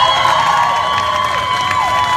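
School choir holding a long, high final note over the end of the song, while the audience cheers and whoops and the first clapping begins.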